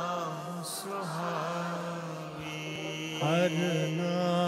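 Sikh kirtan: a male voice singing a Gurbani shabad in long, wavering held notes with vibrato, and a fresh, louder phrase begins about three seconds in.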